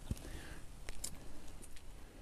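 Quiet outdoor background noise with a few faint, soft clicks.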